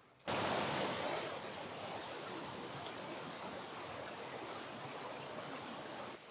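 Mountain stream rushing over boulders: a steady hiss of running water that cuts in suddenly just after the start and eases slightly over the first second or two.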